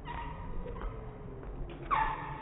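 Basketball sneakers squeaking on a hardwood gym floor: a squeak right at the start and a louder, sharper one near the end, with a few faint knocks in between.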